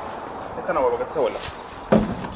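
A single sharp knock near the end, something hard set down on or against an open pickup tailgate while tools are loaded, with a few quiet words before it.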